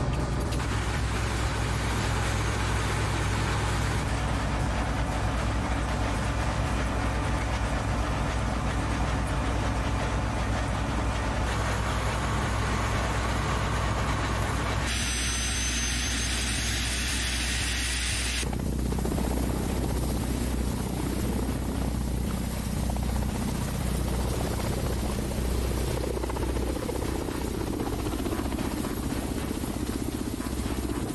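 Kamov Ka-52 attack helicopter running: a steady low throb from its turbine engines and coaxial rotors. The sound shifts abruptly at several cuts between shots, and a brighter high whine joins in for a few seconds midway.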